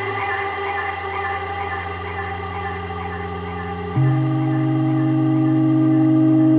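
Electronic dance track in a drumless breakdown: sustained synth chords over held bass notes. About four seconds in the chord changes and the music gets louder.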